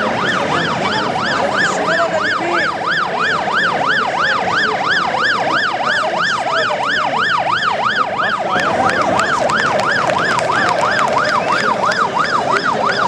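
Electronic siren in a fast yelp, its pitch sweeping up and down about three times a second, loud and steady over the noise of a crowd.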